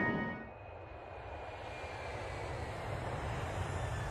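Rushing jet airliner engine noise, growing slowly louder.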